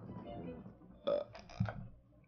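A person's short, throaty burp-like noise, in a few quick pulses about a second in.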